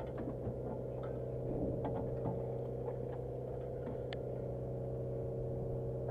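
A fishing boat's engine running steadily with a low hum, with a few faint clicks over it.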